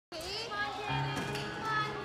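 Children's voices and chatter over music playing.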